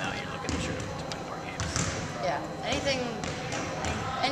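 Basketballs bouncing on a hardwood gym floor: several irregular thumps, with voices talking in the background.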